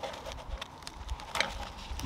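Handling noise of a plastic FirstSpear split-bar tube being pushed and worked onto nylon webbing loops, with scattered soft knocks and one sharp plastic click about one and a half seconds in.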